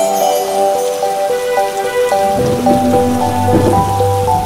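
Intro music with a plinking stepwise melody laid over a rain sound effect; a low rumble joins about halfway through.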